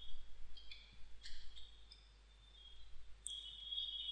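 A few faint computer keyboard keystrokes in the first second and a half as a number is typed, then low room hiss.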